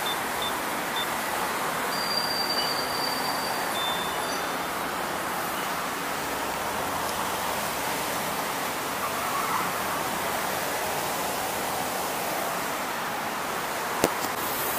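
Fuel pump dispensing petrol into a Bajaj Pulsar motorcycle's tank: a steady rushing hiss. Short, faint, high-pitched beeps come about two and four seconds in.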